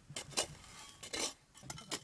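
A small metal hand pick scraping and striking dry gravelly soil and stones as it digs, with several short, sharp clinks and scrapes.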